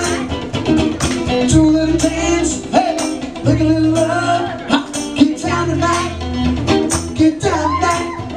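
Live one-man-band music: electric guitar over a steady drum beat and held bass notes, with a lead line that bends in pitch.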